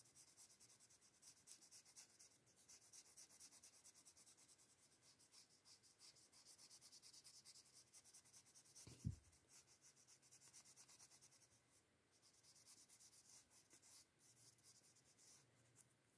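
Faint scratchy rubbing of a red crayon on paper, colouring in quick back-and-forth strokes, with a single soft thump about nine seconds in.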